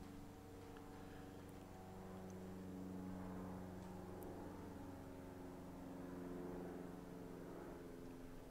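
A faint, steady engine-like hum whose pitch drifts slowly up and down, with a few faint light clicks.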